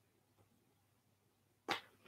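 Near silence with faint room tone, broken by a single short, sharp sound near the end.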